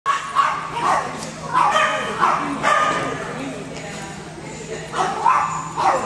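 Small dog yipping and barking: a quick run of short, high yips in the first three seconds, a pause, then two more near the end.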